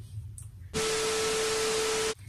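TV-static glitch transition sound effect. A loud, even hiss with a steady tone running through it starts abruptly about three-quarters of a second in and stops just as sharply at the end.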